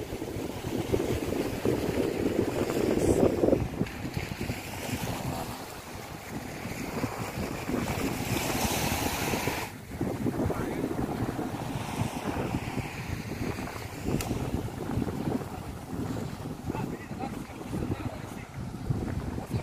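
Wind buffeting the microphone over the wash of sea waves against a rocky shore.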